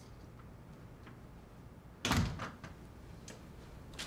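A door being shut, a single sharp thud about two seconds in, followed by a couple of fainter knocks.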